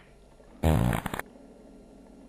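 A short, loud, rasping buzz that slides down in pitch and lasts about half a second, a sound effect played as the computer console reacts.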